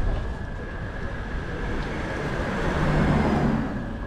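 A car passing along a city street, growing louder to a peak about three seconds in and then fading, over steady traffic noise.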